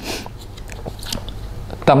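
Paper seed packets rustling and crinkling as they are handled, with a few soft crackles.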